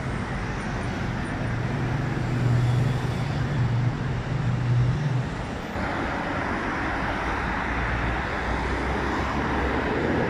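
Multi-lane highway traffic. For the first few seconds a heavy vehicle's engine drones low and steady over the road noise. About six seconds in, the sound changes abruptly to an even rush of many cars and vans passing.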